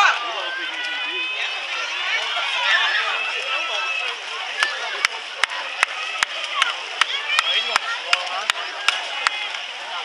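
Spectators shouting and cheering on swimmers in a relay race, several raised voices overlapping. In the second half, sharp clicks come roughly twice a second.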